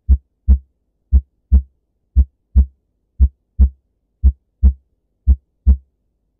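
Heartbeat sound effect: deep paired thumps, lub-dub, about one beat a second, six beats in all.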